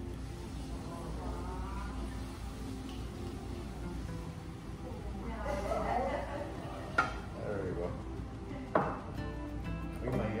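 Liquid poured from a glass bottle into a stainless steel stockpot, with two sharp clicks near the end, over background music.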